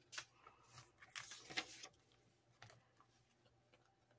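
Faint rustling and clicking of paper cash and a plastic cash-binder pocket being handled, in short bursts, the busiest stretch about a second in.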